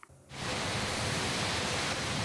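Steady rain falling on a wet city street, a constant hiss that fades in after a brief silence.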